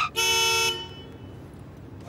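A car horn sounds one steady blast of about half a second.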